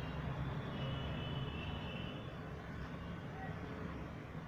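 Faint, steady outdoor background noise: a low rumble with no distinct events.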